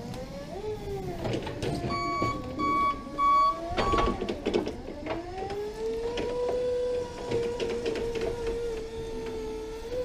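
Articulated forklift working a pallet: its motor and hydraulics whine, rising and falling in pitch as it manoeuvres, with three short beeps about two seconds in. From about five seconds the whine climbs and holds a steady pitch while the mast lifts the pallet, then drops away at the end.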